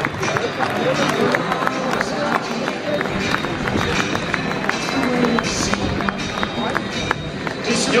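Football-ground crowd as the teams walk out: music over the stadium PA, spectators talking, and a scatter of sharp hand claps from people close by.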